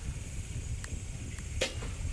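Outdoor batting-cage sound: a steady low wind rumble on the microphone, with one sharp crack of a bat hitting a ball about one and a half seconds in.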